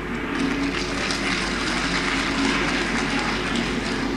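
Audience applause from a lecture-hall crowd, many hands clapping in a steady stream after a question has been put to the speaker.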